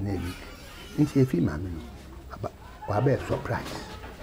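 Domestic chickens clucking in the background under a man's talking.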